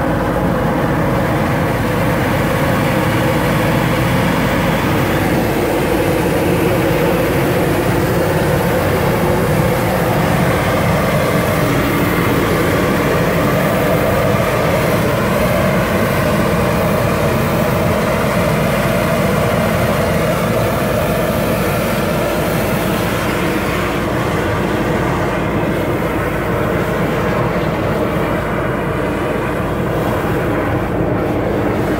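Steady drone of a high-pressure drain-jetting unit's engine and pump running as its hose jets out a blocked culvert pipe, with water gushing from the pipe into the channel below.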